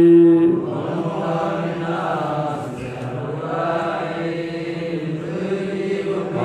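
A man's voice chanting classical Arabic grammar verses in a slow, melodic recitation. A loud held note opens, softer wavering notes follow, and rising and falling notes return near the end.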